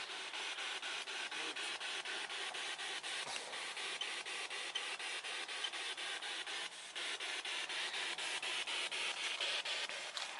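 Spirit box sweeping through radio frequencies: steady static chopped into rapid short bursts, about four or five a second, with a brief drop just before seven seconds in.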